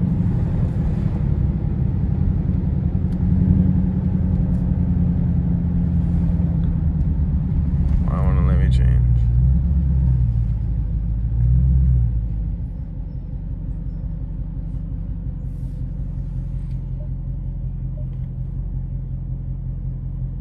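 Dodge Scat Pack's 392 (6.4-litre) HEMI V8 heard from inside the cabin, running loud under throttle, its revs swinging up and down about nine to twelve seconds in. It then eases off to a quieter, steady cruise.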